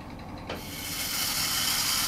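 Motorized brass toilet-paper holder running and turning the roll. It gives a steady high hissing whir that starts about half a second in and grows slightly louder.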